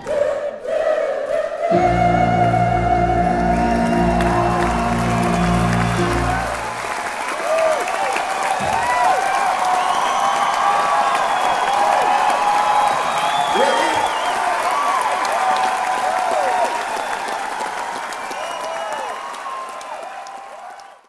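A final piano chord is struck about two seconds in and held under the audience's sustained sung note. Then the crowd applauds and cheers with whistles, tapering off near the end.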